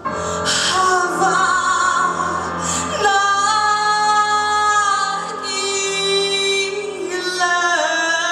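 A woman singing solo into a microphone over accompaniment. A new phrase starts right at the beginning, with long held notes and vibrato.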